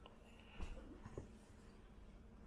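Faint handling sounds of an aluminium laptop being turned over and moved on a table: soft brushes and light taps about half a second and a second in.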